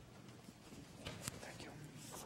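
Faint whispering, with a few soft hissing consonants about a second in.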